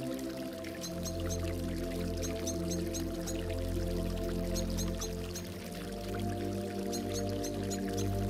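Relaxation music of soft, sustained synthesizer chords, the chord changing about half a second in, over a layer of gurgling, dripping water in small repeated clusters.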